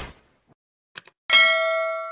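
Subscribe-animation sound effects: a swoosh dying away, two quick mouse clicks about a second in, then a bright notification-bell ding that starts suddenly and rings on, slowly fading.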